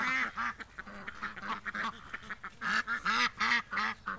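A flock of domestic ducks quacking as they walk, a steady run of short quacks from several birds that grows louder and busier about two and a half seconds in.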